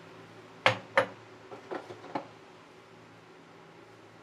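Kitchenware being handled: two sharp knocks about a second in, a third of a second apart, then three fainter taps, as a glass jar is set down and a wooden spatula picked up.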